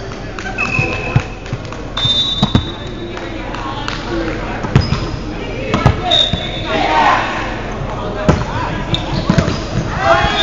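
Volleyball game on a hardwood gym court: a ball thuds several times, with short high squeaks of sneakers on the floor and players' voices calling out.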